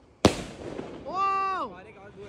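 An aerial skyshot firework shell bursts with one sharp bang about a quarter second in. About a second later comes a person's drawn-out exclamation that falls in pitch at the end.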